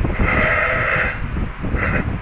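Heavy rain, a loud steady hiss. Over it comes a higher-pitched cry twice: once for about a second, starting just after the opening, and again briefly near the end.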